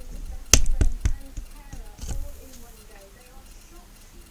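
Hand knocking on an empty steel propane bottle: three hollow knocks about a quarter second apart in the first second, then a softer thump about two seconds in.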